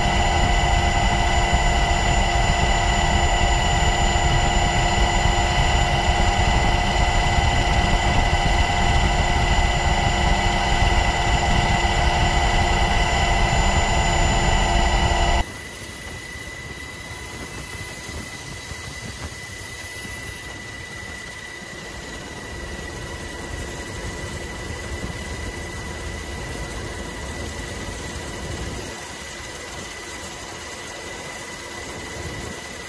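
Steady engine drone heard from inside an aircraft, with several constant whining tones over it. About halfway through it cuts off abruptly to a much quieter, even cabin hiss with one faint high tone.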